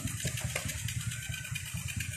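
Small dirt-bike motorcycle engine idling steadily with a low, even pulsing rumble.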